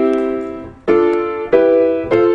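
Grand piano playing three-note chords built in thirds, stepping up the C major scale. One chord rings and fades, then two more are struck, about a second in and near the end.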